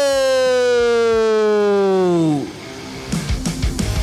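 A boxing ring announcer's voice over a microphone, stretching the last syllable of a boxer's name into one long held call that slides slowly down in pitch and stops about two and a half seconds in. About three seconds in, loud drum-driven rock walk-out music starts.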